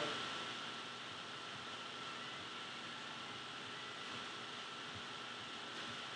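Steady hiss of room tone with a faint thin steady whine and no distinct sound events.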